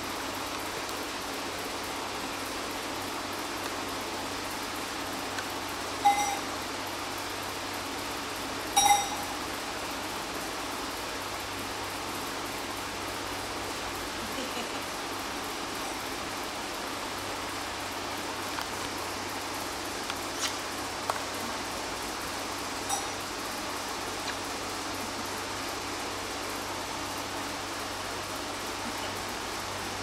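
A steady background hiss, with a few brief, light metallic clinks that ring for a moment; the two loudest come about six and nine seconds in, and fainter ones follow about twenty seconds in.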